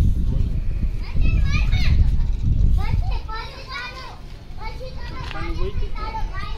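Voices talking, some of them high-pitched, over a low rumble that drops away about three seconds in.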